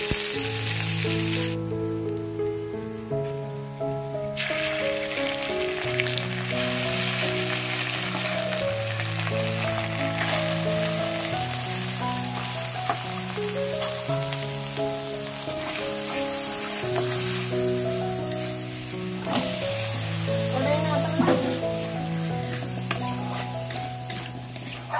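Hot oil sizzling steadily in a steel kadai as onions, spice paste and potato pieces fry. Slow background music with long held notes plays under it. The sizzle drops back about two seconds in and returns about four seconds in.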